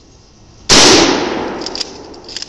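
A single very loud gunshot about two-thirds of a second in, with a long echoing tail that dies away over about a second.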